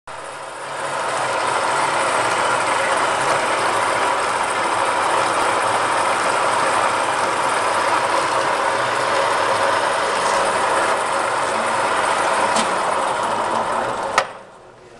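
Metal lathe running steadily, spinning a crankshaft damper pulley in its chuck for a dial-indicator runout check; the machine comes up to speed in the first second.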